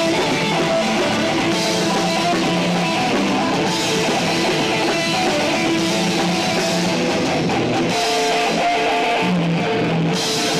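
Hardcore band playing live: loud distorted electric guitars over a drum kit with crashing cymbals, a dense, unbroken wall of sound.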